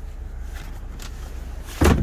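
A second-row bench seat back in a 2022 VW Atlas being lifted upright by hand and latching into place with a single short thump near the end, over a low steady rumble.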